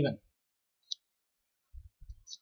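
A single short, sharp click about a second in, followed by faint low knocks near the end.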